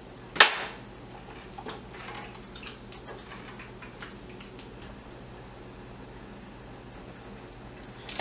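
A spoon knocking once sharply against a stainless steel saucepan, followed by a few faint clicks and scrapes as thick chili is stirred.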